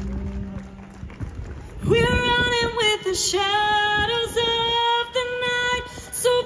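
Live rock band music: a held chord dies away in the first second, then about two seconds in a female vocalist comes in singing long held notes.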